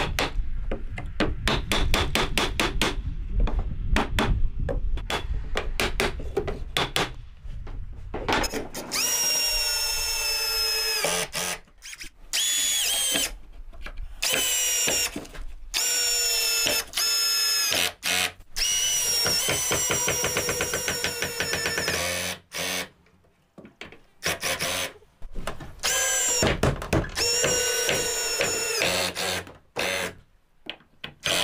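A quick run of hammer taps on wooden window trim, then a cordless drill/driver running in repeated short bursts as it drives screws into the trim, its motor pitch sagging as each screw seats.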